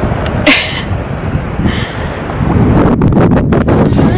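Wind buffeting a handheld camera's microphone on an open boat deck: an uneven low rumble that grows louder in the second half, with a short breathy hiss about half a second in.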